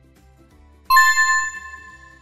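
A single bright electronic ding about a second in, ringing and fading away, the quiz's answer-reveal chime marking the correct answer, over faint background music.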